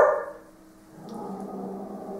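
Dogs barking: a loud bark right at the start, then after a short pause a fainter, drawn-out call that holds steady from about a second in.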